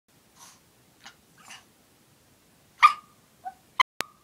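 Small dog vocalizing: a few faint breathy sounds, then a short loud bark-like yip nearly three seconds in, followed by a brief small whine. A sharp click comes just before the end.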